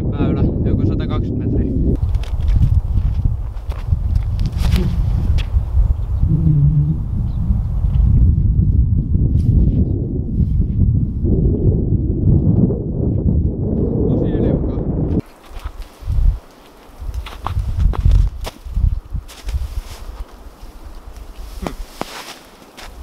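Low, fluctuating rumble of wind and handling noise on the camera microphone while walking across snow. It drops away suddenly about fifteen seconds in, leaving scattered soft footsteps in the snow.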